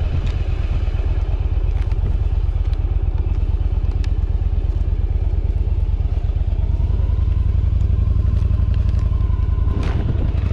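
Yamaha V Star 1100's air-cooled V-twin engine idling with a steady low pulsing.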